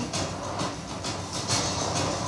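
Action sound effects from a film trailer's soundtrack: a continuous rumbling, clattering noise broken by a few short, sharp hits.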